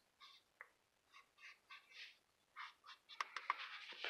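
Felt-tip marker drawing short strokes, a string of faint scratchy squeaks, followed by a few light clicks of handling in the last second.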